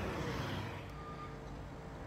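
Low steady rumble of idling semi-truck diesel engines, with one short faint high beep about a second in.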